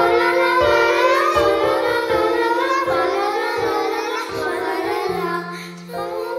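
A small group of children singing a slow carol melody, with piano accompaniment playing held notes beneath the voices.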